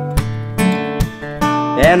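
Acoustic guitar strummed, its chords ringing between a few strokes, with a sung voice coming in near the end.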